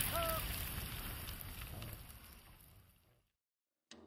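A steady background noise, left over from a field recording with a brief voice sound just at the start, fading out gradually to silence about three seconds in; a sharp click-like onset sounds near the end.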